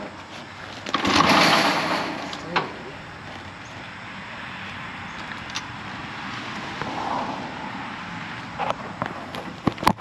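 Kick-starting a KTM 300 two-stroke dirt bike that does not fire. About a second in, a kick turns the engine over with a rushing swish lasting about a second and a half. A few sharp clicks of the kick lever and bike parts follow.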